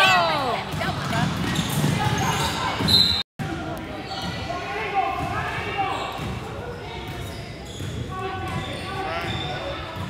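A basketball dribbled on a hardwood gym floor during play, amid spectators' chatter and shouts echoing in the large gym, loudest at the start. A short shrill note sounds about three seconds in.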